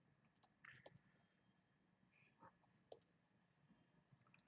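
Near silence: quiet room tone with a handful of faint, short clicks scattered through it.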